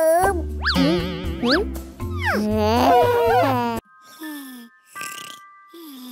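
Cartoon sound effects over playful children's-style music: wobbling, boing-like tones sliding up and down, cut off suddenly a little before four seconds in, then a few short falling tones near the end.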